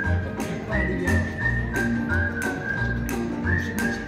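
Background music: a whistled melody over a steady beat and bass.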